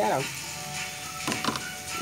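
A metal spoon scraping and clicking against a plastic container of cooked meat strips, with a short cluster of clicks about a second and a half in, over faint background music.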